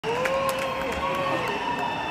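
Concert crowd chatter and calls, with one long wavering note held over them.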